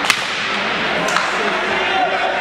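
Ice hockey sticks clacking on the puck and on each other as play restarts: a sharp crack just after the start and a weaker one about a second in, over the steady noise of a rink arena.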